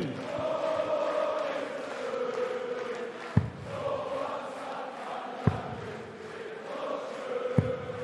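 Arena crowd chanting and singing steadily, with three sharp thuds of darts striking a Winmau Blade 6 bristle dartboard about two seconds apart, the third near the end.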